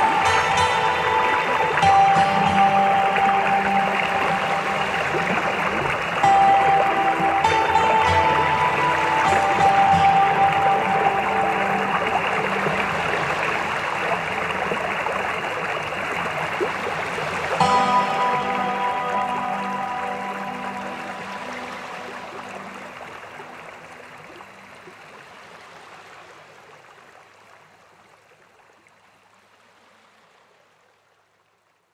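Slow background music of sparse held tones over a steady rushing-water sound like a stream, the whole fading out gradually over the last ten seconds.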